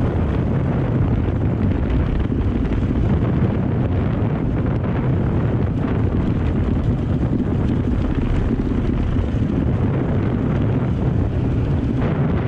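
Heavy wind rumble on the helmet-mounted microphone, mixed with a dirt bike's engine running steadily at riding speed on a dirt track.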